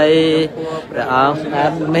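Buddhist chanting: a single voice reciting in a wavering, sing-song pitch over a steady low held tone.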